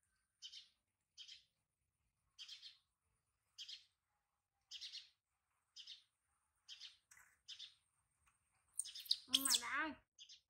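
Baby monkey giving short high squeaks, about one a second. Near the end it lets out a louder, longer cry that wavers in pitch.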